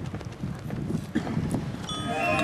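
Irregular low rumbling with a few light knocks, then just at the end a high school marching band's horns come in together with a held opening chord.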